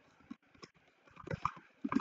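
Computer keyboard typing: a few scattered, soft keystrokes, bunched together a little past the middle.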